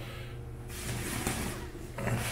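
Clear plastic protective wrapping crinkling and rustling as it is pulled off a new chrome bathroom faucet, starting under a second in, over a steady low hum.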